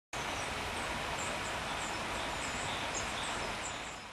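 Outdoor ambience: a steady background hiss with small birds chirping repeatedly in short, high calls, fading out at the end.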